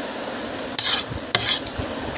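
Fork stirring and scraping through noodles in a plastic food box: two short, bright scrapes, the first a little under a second in and the second about half a second later, over a steady background hum.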